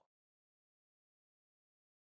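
Silence: the audio track is blank, with no sound at all.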